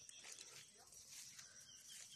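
Near silence, with a few faint, soft rustles.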